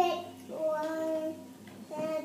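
A young child singing, holding one steady note for about a second from about half a second in, with short vocal sounds at the start and near the end.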